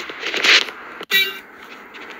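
Rubbing and scraping as a flathead screwdriver is drawn back out through the rubber firewall grommet, loudest about half a second in. The sound cuts off abruptly about a second in.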